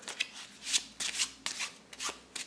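Overhand shuffle of a deck of playing cards: cards run off from one hand into the other in an uneven run of soft, quick slaps, about five a second.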